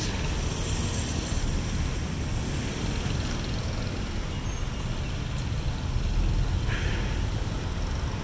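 Steady low rumble of city road traffic, with a brief faint higher sound about seven seconds in.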